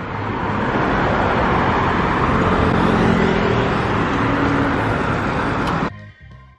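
Road traffic: cars passing at close range, a steady wash of tyre and engine noise with a vehicle's engine tone audible through the middle. It cuts off suddenly near the end.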